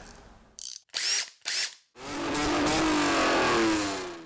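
Power-tool sound effect: three short bursts of a power tool, then a longer run of about two seconds whose pitch slowly falls before it fades out.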